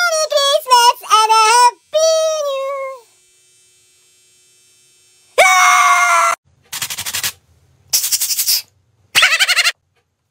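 A man's high-pitched, sing-song voice for the first three seconds, then a short pause. About five and a half seconds in comes a loud scream lasting about a second, followed by three short bursts of sound.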